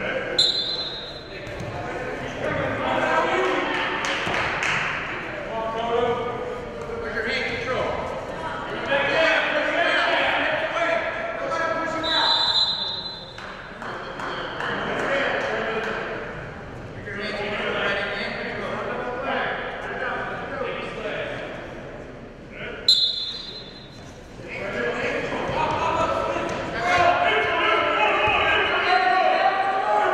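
Voices of coaches and spectators shouting through a wrestling bout in a gymnasium, echoing in the hall. A referee's whistle blows briefly three times: just after the start, about twelve seconds in, and about twenty-three seconds in.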